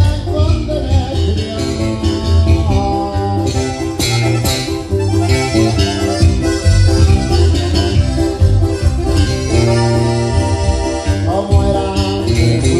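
Live sierreño band playing a corrido: electric bass, button accordion and acoustic guitar, with a steady driving bass line.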